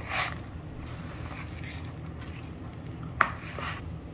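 Metal spoon stirring a raw ground-meat mixture in a plastic bowl: soft, wet squishing and scraping, with one sharp click about three seconds in.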